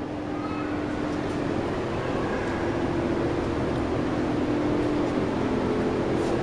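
A steady mechanical hum: an even hiss with a low, unchanging drone underneath.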